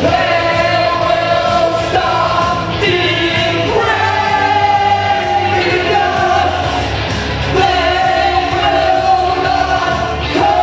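Live amplified duet: a man and a woman singing into microphones over a backing track, holding long notes.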